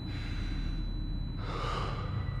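A man's hard breath: one sharp, hissy breath near the end, over a low steady rumble.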